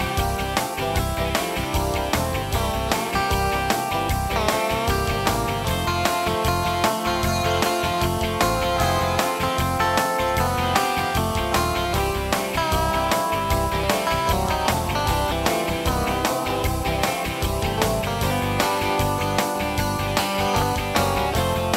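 Instrumental break of a laid-back blues-rock shuffle from a Yamaha Tyros 2 arranger keyboard. A guitar-voiced lead line with bent notes plays over a steady bass and drum groove.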